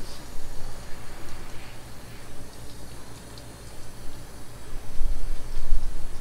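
Garden hose spray nozzle on its shower setting, spraying water over a soapy car as it is washed, keeping the paint wet so it does not dry in the sun. The spray is a steady hiss that dips in the middle, with a low rumble near the end.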